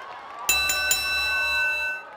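A sudden electronic tone of several steady high pitches held together, starting with a few clicks about half a second in and cutting off after about a second and a half, over crowd whoops.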